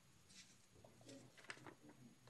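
Near silence: faint room tone with a few soft clicks and a brief low murmur a second or so in.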